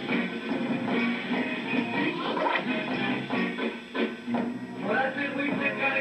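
A 1960s rock band playing live, with electric guitar, bass and drums, as the closing number of a club set.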